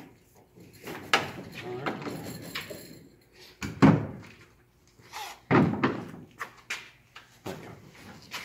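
A few sharp knocks and thumps from handling a pedal boat's canopy frame and straps against the boat. The loudest knock comes about four seconds in.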